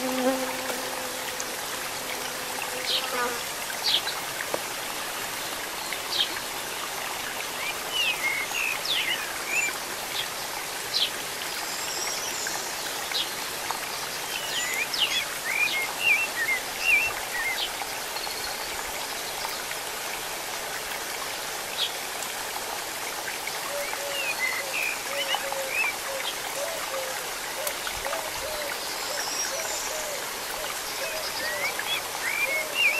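Shallow river stream trickling over rocks, a steady rushing wash, with scattered short high chirps. A low steady hum stops about three seconds in.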